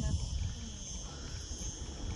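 Steady high-pitched chorus of insects in dry Mediterranean scrub, with a low rumble underneath.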